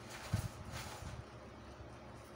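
Faint handling noise: a soft bump and a brief rustle about a third of a second in, over a low steady background.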